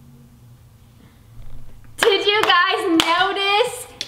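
Near quiet for the first two seconds, then two young women's excited high-pitched wordless vocalizing with a few sharp hand claps.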